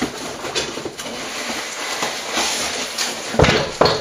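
Rustling and handling noise as a cardboard shipping box is picked up and moved, with a few light clicks early and a couple of heavier knocks about three and a half seconds in.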